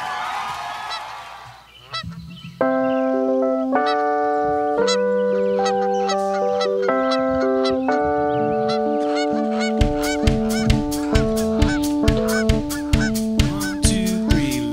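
Electronic keyboard playing sustained chords that start about three seconds in, changing every second or so, with a steady drum beat joining about ten seconds in: the intro of a song.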